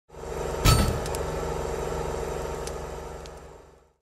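Intro sound effect for a channel logo: a low rumbling drone with sustained tones swells in, a sharp hit lands about two-thirds of a second in, and the drone then fades out.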